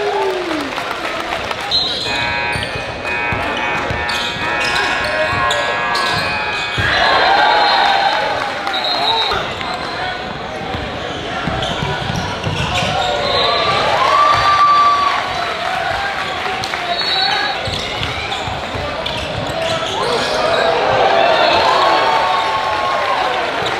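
Basketball game sound on a hardwood gym court: a ball being dribbled, sneakers squeaking, and players and spectators calling out. A steady tone sounds for about five seconds near the start.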